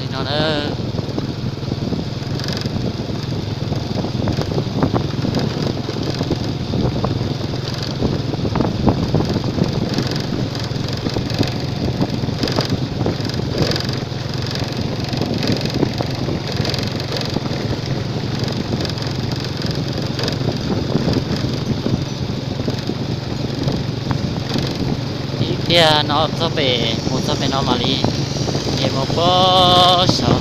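A vehicle travelling along a gravel road: steady engine and road noise with a low rumble. A short wavering voice-like sound comes just after the start and again near the end.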